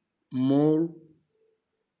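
A cricket chirping in short repeated trills at one high, steady pitch, heard behind and between a man's speech.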